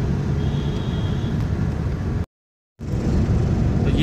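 Steady engine and road rumble of a car driving in traffic, heard from inside the cabin, with a faint high steady tone for about a second near the start. The sound drops out completely for about half a second a little past halfway, then the same rumble resumes.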